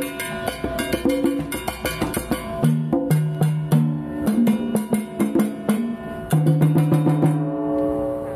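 Live ensemble music: quick, dense drum and clicking percussion strokes over sustained low pitched notes. The playing thins out near the end.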